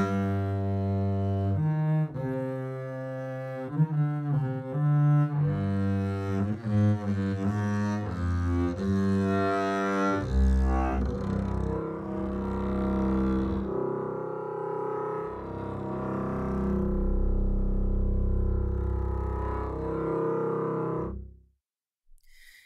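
Sampled orchestral double bass (Leonid Bass virtual instrument) played from a keyboard as a dry, bowed legato line with no reverb. For the first ten seconds or so the line steps from note to note about once or twice a second, then it drops to lower, long held notes that stop shortly before the end.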